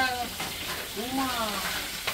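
A few words from background voices over a steady hiss.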